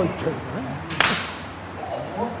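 A single sharp crack of a bamboo shinai striking, about a second in.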